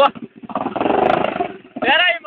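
Dirt bike engine revving hard, swelling loud for about a second as the bike climbs a grassy trail slope.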